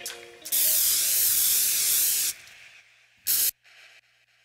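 Aerosol spray-paint can hissing in one long spray of about two seconds, then a second short burst near the end. The spray can is used as a graffiti sound effect, with the last notes of the track's plucked-string music fading out under its start.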